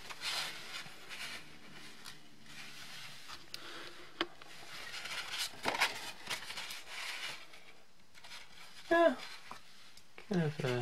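Soft rubbing of a cotton swab over matte card stock, then the rustle and handling of the paper card as it is lifted and laid on a stack of paper, with a sharp tap about four seconds in. Near the end comes a brief voiced hum from a person, the loudest sound here.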